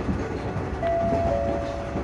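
Passenger train car running, heard from inside as a steady rumble. Two steady high-pitched squeals join in about midway, the second starting a little after the first.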